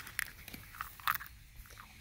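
Faint, scattered clicks and rustles of plastic Easter eggs being handled in a fabric basket.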